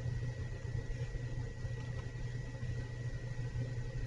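Steady low background hum with a faint, thin high whine under it, unchanging throughout; no other event.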